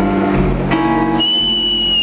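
Live smooth-jazz band music led by keyboards. About a second in, a high, steady whistle comes in over the music and holds.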